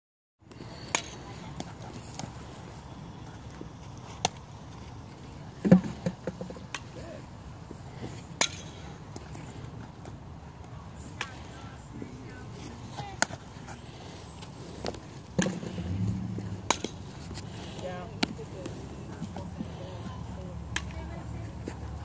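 Scattered sharp knocks and pops of softball infield practice, balls struck and caught in gloves, a dozen or so spread irregularly with the loudest about six seconds in. Faint distant voices in the background.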